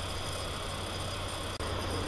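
Steady low hum and hiss of background noise in a pause between spoken words, with one faint click about one and a half seconds in.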